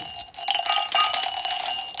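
A bell rung rapidly and continuously, with a steady ringing tone and quick metallic clinks, starting about half a second in.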